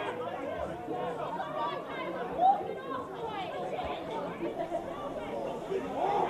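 Several people chattering at once, the voices overlapping too much for words to be made out, with one voice briefly louder about two and a half seconds in.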